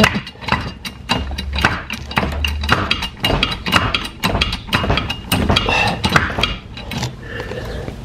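Wood-framed garage being jacked up off its foundation: a dense, irregular run of sharp clicks, knocks and creaks from the framing and the jack, with a low rumble from about one to nearly three seconds in.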